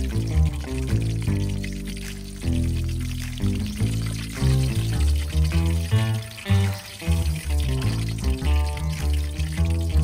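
Background music, a melody over a deep bass line, with a steady hiss of oil frying in a wok underneath.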